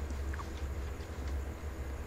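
Steady low hum under a faint even background hiss.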